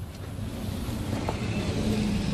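A motor vehicle's engine and road noise, a steady low rumble that grows gradually louder as it approaches.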